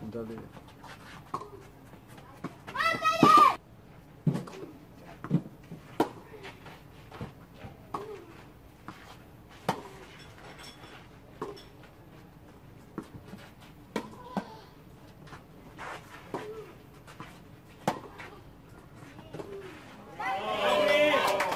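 Tennis ball struck by rackets and bouncing on a clay court, sharp pops every second or two. A brief loud shout from a young voice comes about three seconds in.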